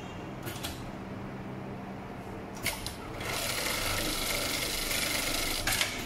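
HighTex MLK500-2516N automatic pattern sewing machine stitching through webbing: a few sharp mechanical clicks, then a steady run of rapid stitching lasting about two and a half seconds from about three seconds in, ending with another cluster of clicks.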